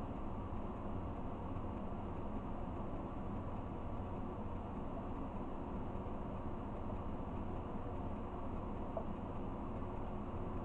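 Steady, even background hiss and low hum of room tone, with no distinct events.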